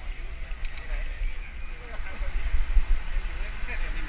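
Wind rumbling on a helmet-mounted action camera's microphone as the bicycle rides along, with indistinct voices of nearby cyclists and onlookers talking over it.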